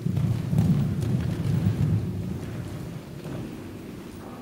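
Hoofbeats of a cantering horse on soft indoor-arena footing: dull, low thuds that fade about halfway through as the horse moves away.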